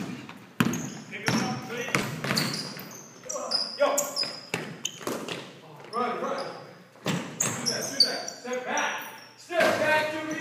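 A basketball bouncing and being dribbled on a wooden gym floor, with sharp thuds throughout and brief high squeaks of sneakers on the hardwood. Players' voices call out at several points.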